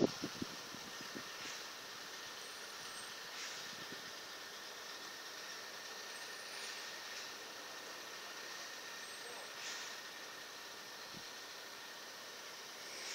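Distant heavy vehicles of an oversize-load convoy, heard as a steady faint hiss of traffic noise with a few soft swells. There is one sharp click right at the start.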